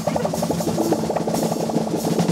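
Instrumental psychedelic rock played by a three-piece band of electric guitar, bass guitar and drum kit, with a quick run of repeated notes over the drums.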